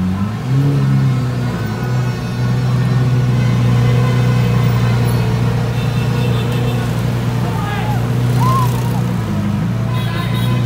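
Lamborghini Aventador's 6.5-litre V12 running steadily at low revs as the car creeps along. Its pitch steps up briefly about half a second in and settles back near the end.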